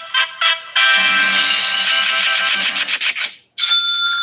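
A short musical sound effect played from a phone's speaker: quick notes about five a second, then a long held chord that fades out. Near the end a steady high electronic tone begins.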